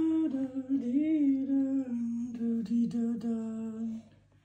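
A person humming a slow, wavering tune that settles into one long held note for about the last two seconds, then stops abruptly.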